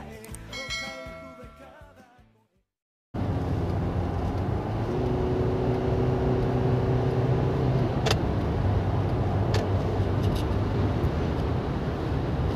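A closing music jingle with a ringing chime fades out, and after a brief silence, about three seconds in, steady road and engine noise from inside a moving car starts and runs on at highway speed.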